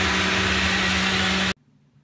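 Ninja countertop blender motor running at speed, a loud steady whir with a low hum, blending a fruit drink with whole kiwi in it. It stops abruptly about one and a half seconds in.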